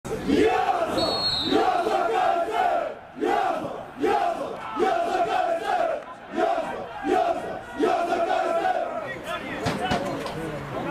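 Football supporters chanting in unison: a loud, rhythmic shouted chant with phrases under a second apart, briefly dipping around three and six seconds.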